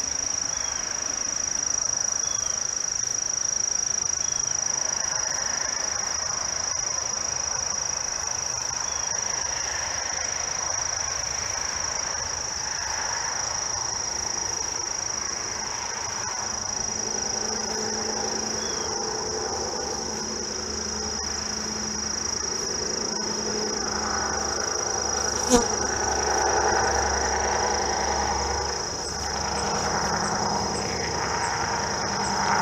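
Insects trilling in a steady, unbroken high-pitched chorus. In the second half a low hum of a distant engine joins it, and one sharp click sounds near the end.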